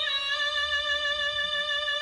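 A female singer belting one long, steady D5 note with little vibrato and a sharp, piercing edge, heard through a TV's speakers.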